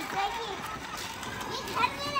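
Children's voices: high-pitched chatter and calls from several kids, loudest near the start and again near the end.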